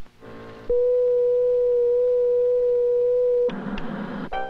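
Television set sounding a steady electronic tone, held for about three seconds, then broken off by a short burst of noise.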